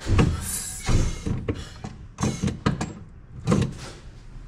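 Brake pedal of an Isuzu MU-X being pressed repeatedly after a front brake pad change, giving a series of about six knocks and clunks over four seconds at an uneven pace.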